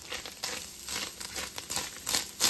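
Spatula stirring browned ground beef and chili seasoning in an enameled cast-iron Dutch oven: a run of short, irregular clicks and scrapes against the pot.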